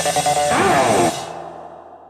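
Electric guitar music on a 1980 Greco Super Real Les Paul-style guitar, picked in a steady rhythm. About half a second in, the sound slides sharply down in pitch, then breaks off about a second in and fades out with a ringing tail.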